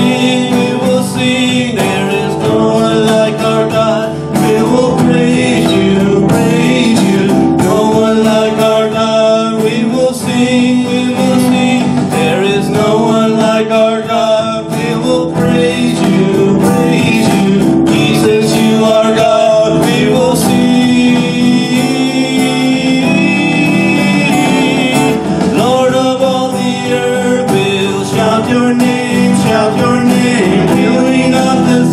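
Live Christian worship song: an acoustic guitar strummed steadily while men sing into microphones, the voices carrying the melody over the guitar.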